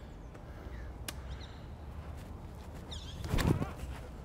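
A disc golfer's run-up steps across the tee pad, ending in a heavier thud about three and a half seconds in as the plant step and drive are made, over a low steady rumble.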